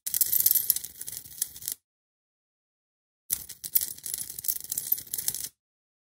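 Crackling hiss of a high-voltage corona discharge at wire electrodes fed by a flyback transformer, heard in two bursts of about two seconds as the high voltage is switched on and off.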